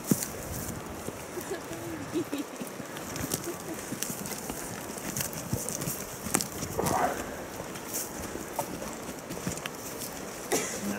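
Footsteps of two people walking through grass and dry logging slash, an uneven run of soft clicks and rustles from boots on brush and dead branches, with faint voices now and then.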